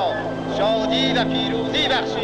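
A voice heard over a steady, low, sustained drone.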